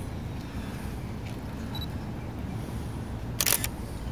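Low, steady outdoor rumble with no music, and a short cluster of sharp clicks about three and a half seconds in.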